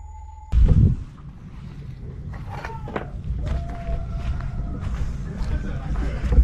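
A loud low thump about half a second in, then a steady low rumble with faint, distant voices and a brief wavering tone.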